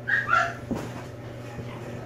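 Young Australian cattle dog–feist mix puppy giving two short, high-pitched yips in play while being rubbed on its back, followed by a single soft knock.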